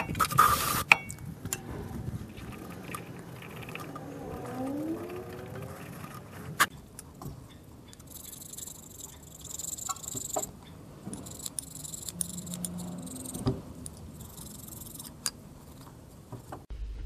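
An aerosol spray can hissing for about a second, sprayed into the thermostat seat on the engine's cylinder head. Later, light scraping on the old thermostat housing's mating surface as dried gasket residue is cleaned off, with a few sharp clicks.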